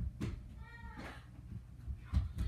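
A faint, short, high-pitched call that rises and falls, a little after half a second in, with a few soft knocks around it.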